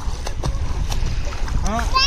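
Shallow sea water splashing and sloshing around people wading and trying to swim, over a steady low rumble of wind on the microphone. Near the end a high voice cries out briefly.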